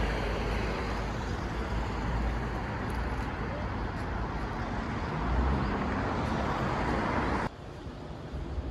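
Steady road traffic noise, a continuous low rumble with a hiss above it, which cuts off suddenly near the end, leaving a quieter background.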